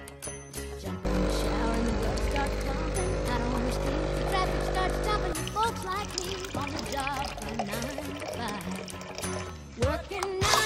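Espresso machine's pump running with a steady hum for about four seconds, starting a second in, then water running from a dispenser tap into a plastic cup. Music with singing plays over both.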